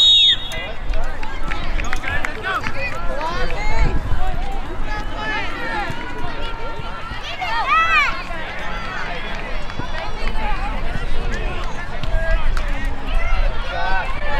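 Voices of spectators and players calling and shouting across an outdoor youth soccer field, with a louder drawn-out shout about halfway through.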